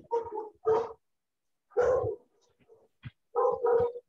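A man laughing in several short bursts, heard over a video call, with dead-silent gaps between the bursts.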